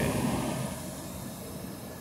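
A passing vehicle's rumble, fading away over the first second and leaving a low, steady background hum.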